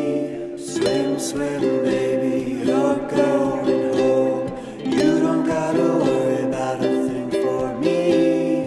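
Acoustic indie-folk music: plucked and strummed string instruments, ukulele or guitar, play sustained chords, with a new chord struck about every two seconds.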